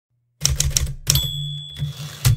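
Manual typewriter sound effect: a quick run of four or five key strikes, then a bell dings about a second in and keeps ringing, with another clack near the end.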